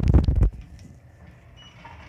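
A brief loud rumbling bump of the phone being handled, lasting about half a second, followed by faint background hum.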